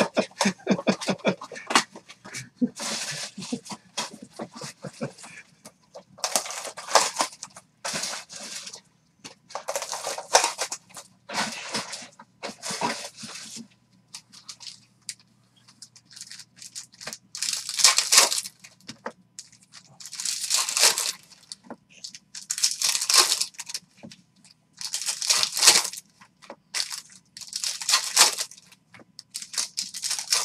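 Foil trading-card packs being torn open and their wrappers crinkling, in a dozen or so separate rustling bursts of about a second each.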